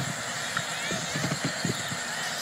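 Ground ambience of a live cricket broadcast: a steady hiss with faint, irregular low knocks and thuds scattered through it.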